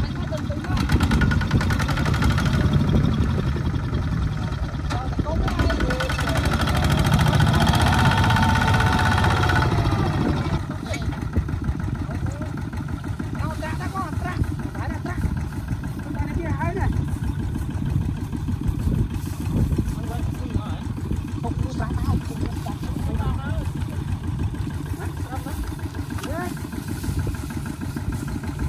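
Single-cylinder diesel engine of a Kubota two-wheel walking tractor. For about the first ten seconds it runs louder while pulling a loaded trailer through mud, then settles to a steadier, quieter idle-like chugging for the rest.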